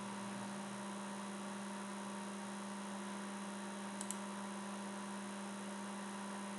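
Steady low electrical hum with a faint hiss underneath, and one faint click about four seconds in.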